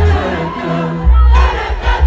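Live concert music recorded on a phone in the crowd: a singer over guitar and heavy bass from the PA, with the audience singing along and shouting.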